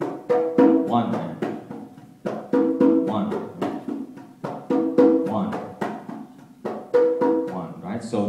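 A pair of conga drums played by hand in a repeating tumbao-style pattern: heel-and-tip strokes with ringing open tones, the phrase coming round about every two seconds, four times over.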